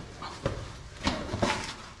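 Boots and a caving suit scuffing and knocking on cave rock as a caver clambers through a low passage: several short scrapes and knocks, about half a second in, around one second in and near one and a half seconds.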